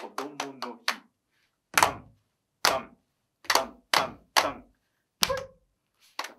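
Hand claps and foot stamps played in a body-percussion rhythm: a quick run of five claps, then two single strokes and three quicker ones. Near the end comes one more stroke with a short shouted 'hoi!'.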